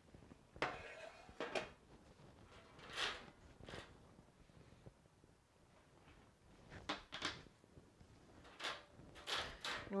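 A metal baking pan lifted off freshly turned-out rolls and wire cooling racks shifted on a stone countertop: a series of short knocks and clatters, some with a brief metallic ring, with a quiet spell midway.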